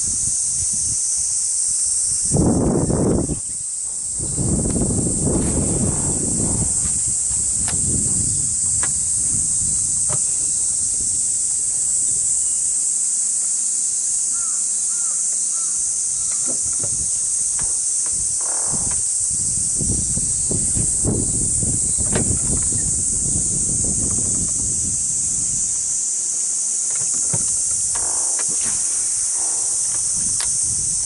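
Steady high-pitched buzzing of cicadas in summer woodland, with irregular bouts of low rumbling noise on the microphone.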